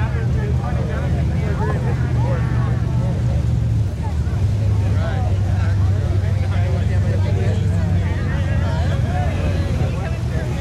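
Lifted pickup truck's engine running under load as it drives through a deep mud pit, its pitch shifting down about four seconds in. Voices chatter over it.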